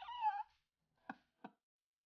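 A short, high-pitched, wavering call lasting about half a second at the start, then two faint clicks about a second in.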